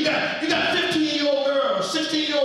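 A man preaching in a chanted, half-sung cadence, holding pitched notes between phrases.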